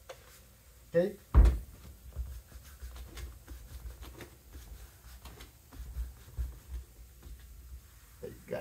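Vinyl-covered wooden door panel being handled on a workbench: one loud thump about a second and a half in, then light scattered knocks and rubbing as the vinyl is pressed onto the panel's edge.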